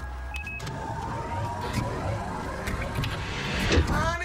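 Drawers being yanked open and rummaged through, with scattered knocks and clatter over a steady low rumble, in an animated film's sound effects.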